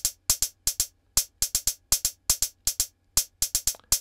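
Closed hi-hat samples from Ableton Live's Coral drum kit playing a looping, syncopated sixteenth-note pattern: short, crisp ticks in uneven groups of two to four with small gaps between.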